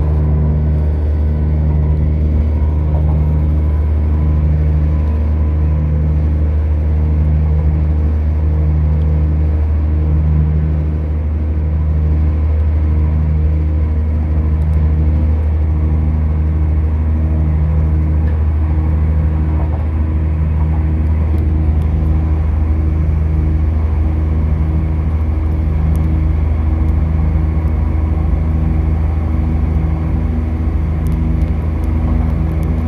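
Interior running noise of a diesel passenger train: a steady low drone of engine and wheels on rails, with a lower hum that pulses about once a second.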